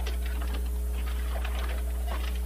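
A steady low electrical hum on the recording, with faint scattered clicks and rustling over it.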